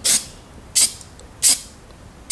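Aerosol can of Krylon True Seal rubberized sealant spraying in three short hissing bursts, about two-thirds of a second apart.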